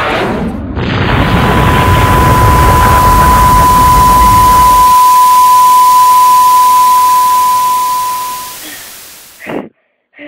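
Loud static hiss, like a television with no signal, with a single steady high beep held through most of it. The hiss fades away near the end, and a short gasp-like breath follows.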